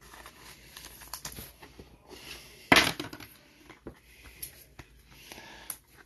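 A trading card being handled into a clear plastic sleeve and a rigid plastic top loader: soft plastic rustling and scraping with small clicks, and one louder rasp about halfway through.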